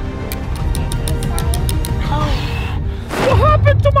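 Background music with a steady, fast ticking beat, then a voice speaking loudly near the end.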